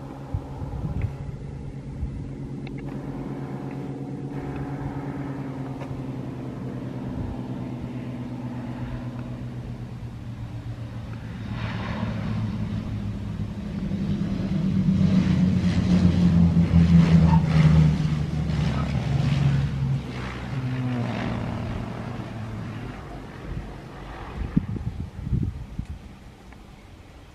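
The twin piston engines of a Piper PA-23-250 Aztec droning as it comes in to land. The sound grows louder as the plane passes close about two-thirds of the way through, then fades as it rolls out along the runway. A few sharp knocks come near the end.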